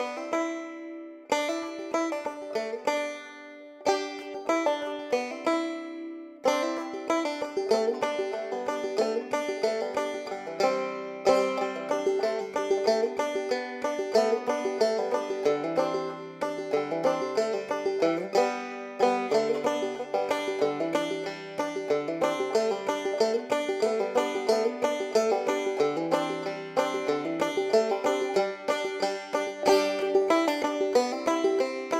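Background music of picked banjo in a bluegrass style. It starts sparse, with short phrases and pauses, and settles into a steady rolling pattern about six seconds in.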